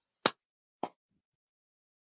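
Two short, sharp impact sounds about half a second apart.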